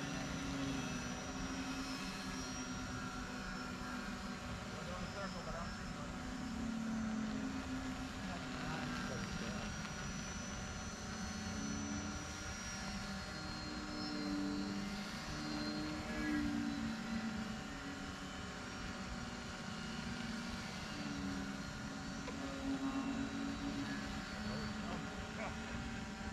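Several small electric radio-controlled model airplanes flying overhead, their motors and propellers making overlapping drones that slowly rise and fall in pitch as the planes circle.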